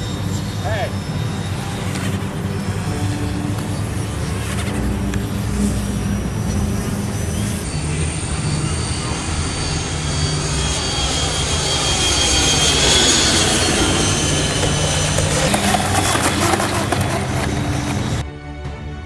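Model F-16 jet's engine running steadily as the model flies, swelling in level around the middle of the passage, with people talking in the background.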